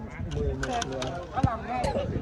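Men's voices talking and calling out on a training pitch, with a couple of short sharp knocks near the end.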